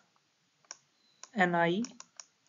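A few sharp, isolated clicks from a pen or mouse used to handwrite letters on a digital slide. About halfway through, a voice spells out the letters "N, I".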